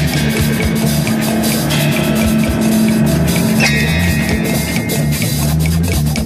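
Progressive rock music from a 1972 album: a drum kit plays over a bass line of held low notes.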